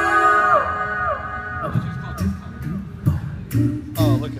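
A cappella vocal group singing: a held chord breaks off into several falling vocal slides, then sharp percussive beats start about halfway through and settle into a steady rhythm with a low sung bass line near the end.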